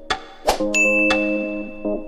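Sound effects of a subscribe-button animation: a sharp click about half a second in, then a bright bell-like ding that holds for over a second, over electronic background music.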